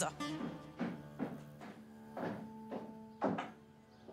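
Background score music of sustained held tones, with a series of soft thumps about half a second apart.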